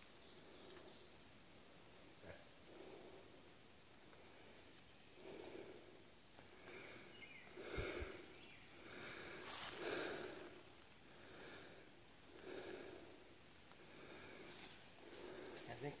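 Faint, repeated breaths of a person hiking through woodland brush, about one every second or so, with a few brief crackles of twigs and leaves.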